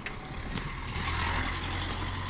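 A motor vehicle passing: a steady low rumble with a rushing noise that swells about a second in.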